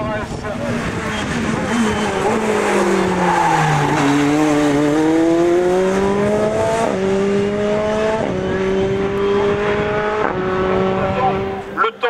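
Tatuus Formula Renault 2.0 single-seater's four-cylinder racing engine running hard. Its note falls for the first few seconds as the car slows for a bend, then climbs through the gears, with three quick upshifts, each a sudden drop in pitch.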